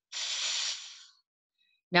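A woman making a drawn-out, unvoiced 'th' sound with her tongue between her teeth, about a second long and fading out: the first sound of a word, made to teach it.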